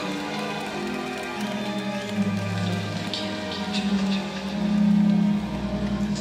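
A live soul band playing a slow, sustained passage: long held low notes and chords that change every second or two, with scattered light high clicks and rattles over them and no steady drum beat.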